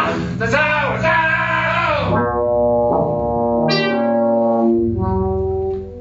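A man's voice in an experimental sound-poetry vocal performance: wide-open, pitch-bending vocalising, then long held pitched tones with a rising glide midway, over a steady low drone. The sound drops away shortly before the end.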